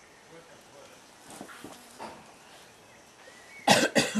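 A person coughs loudly twice near the end, after a little faint talk in the background.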